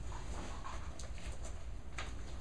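Faint handling noise of papers and a stiff poster board, with a couple of light clicks, over a steady low room hum.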